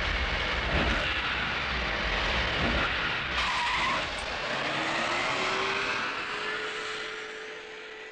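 A loud, steady rushing noise with a short burst about three and a half seconds in and a faint, slowly rising tone after it; it fades out near the end.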